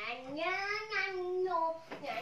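A young child singing in a high voice, in long, smoothly gliding held notes.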